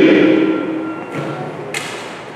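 A man's voice trails off and hangs in the long echo of a large church hall, followed by a faint rustle and a single sharp tap near the end, like a touch on a wooden lectern.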